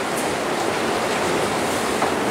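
Steady, even rushing noise from a running escalator, with no distinct knocks or clicks.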